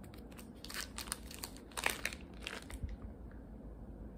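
Thin plastic zip bag crinkling as it is opened and handled, a series of irregular crackles, the loudest about two seconds in.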